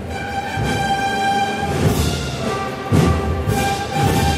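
Wind band playing a Holy Week processional march: brass and woodwinds hold long sustained notes, with bass drum strokes coming in during the second half.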